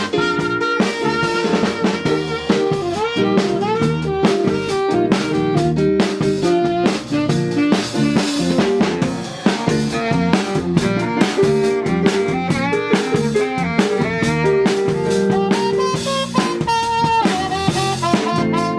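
A live band playing a song in rehearsal: a horn section of saxophones and trumpet over drum kit, with electric guitar, bass guitar and keyboard.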